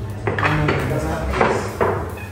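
Pool balls clacking against each other: a few sharp, hard knocks spread across the moment, with a short ring after each.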